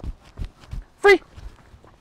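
Footsteps of a handler and dog walking at heel on grass: soft, irregular low thuds. A single short voiced sound, rising then falling in pitch, cuts in about a second in and is the loudest thing heard.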